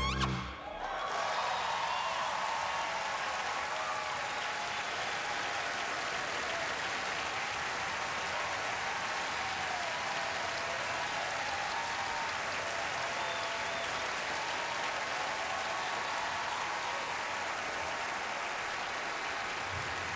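A large audience applauding steadily, with a few scattered cheers, as a jazz band's final notes stop about half a second in.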